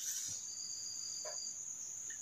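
Insects chirring in one steady, high-pitched drone, with a second, lower note joining briefly in the middle.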